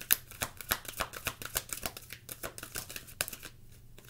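A deck of oracle cards being shuffled by hand: a fast run of light clicks and slaps of card stock that stops about three and a half seconds in.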